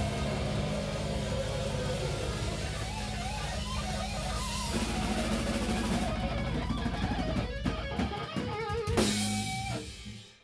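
Live metal band playing an instrumental passage: electric guitar riffing over a full drum kit with heavy bass drum. Near the end the music breaks into a few stop-start hits, then a last loud hit, and stops.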